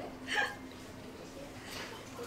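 One short vocal sound from a diner, like a hiccup, a little under half a second in, then quiet room background with a steady low hum.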